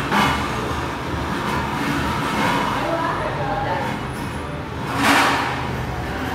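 Stainless-steel stools scraping and knocking on a tiled floor as they are pushed along and stacked, with one louder metallic scrape or clatter near the end.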